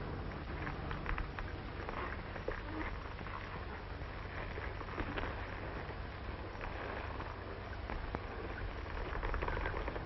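Steady low hiss and hum with a few faint, scattered clicks: the background noise of an old film soundtrack.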